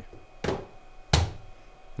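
A cardboard box set down on a wooden tabletop: two short dull knocks, about half a second and a second in, the second louder and deeper.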